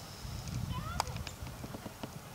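Hoofbeats of a horse galloping on turf, muffled and irregular, with a sharp click about halfway through.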